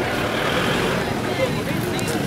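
Busy street noise: a steady wash of road traffic with people's voices mixed in, no single sound standing out.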